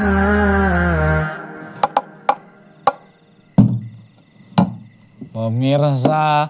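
A chanted male vocal over a low drone ends about a second in. A handful of sharp, separate knocks follow over faint, steady cricket chirping, and a man's voice starts near the end.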